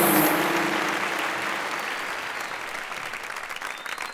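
Studio audience applauding, with the last held note of the theme music cutting off just after the start; the applause then gradually dies away.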